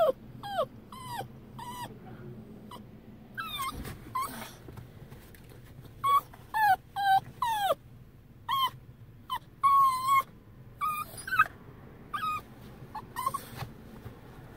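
Small dog whining: a string of short, high-pitched whimpers that slide up and down, coming in clusters with brief pauses between.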